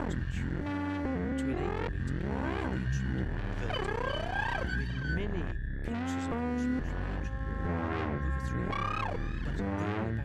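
Serge modular synthesizer patch: a dense layer of electronic tones with many pitches gliding up and down, short stepped notes, a held high whistle-like tone and a low bass drone underneath.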